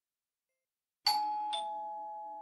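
Two-tone ding-dong doorbell chime: a higher note about a second in, then a lower note half a second later, both ringing on and slowly fading.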